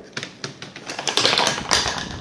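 Bugaboo Donkey 5 stroller frame clattering as it is lifted and swings open: a rapid run of clicks and rattles from its joints, thickest about a second in.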